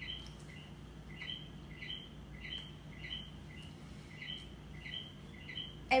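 A bird chirping repeatedly, short chirps at about two to three a second, over a faint steady low hum.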